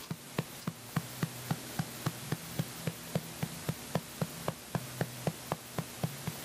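An open hand patting an infant's back through its clothes to bring up a burp: firm, even pats at about four a second that keep going throughout.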